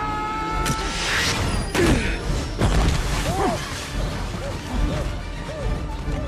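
Film soundtrack mix: score music under sci-fi sound effects, with a few heavy crashes and impacts in the first half as the suited figures hurtle through a hatch onto a deck. Short chirping tones follow through the second half.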